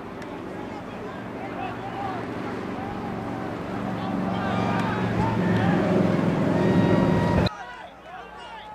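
Many voices shouting and cheering from the sideline and stands over rising crowd noise, growing louder for several seconds during a football play, then cutting off suddenly near the end.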